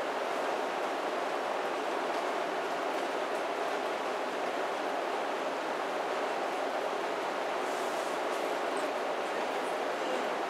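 Steady, even rushing noise with no speech and no distinct sounds in it.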